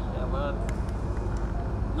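A short fragment of a man's speech through a microphone, over a steady low background rumble, with one faint click just under a second in.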